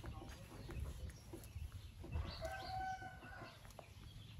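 A rooster crows once about two seconds in: one held call lasting about a second, over a low rumble.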